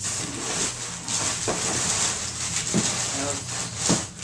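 Plastic bags and packing material rustling and crinkling as hands dig through a cardboard box, with a few sharp crackles.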